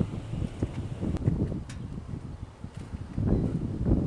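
Wind buffeting the microphone: an uneven low rumble that is strongest in the last second.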